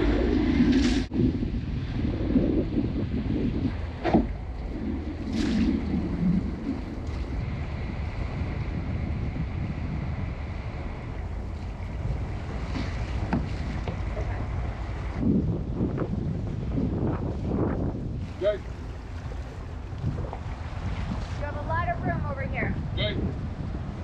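Seawind 1600 catamaran motoring away from a dock: a low steady rumble of engine and wind on the microphone, with water moving along the hulls.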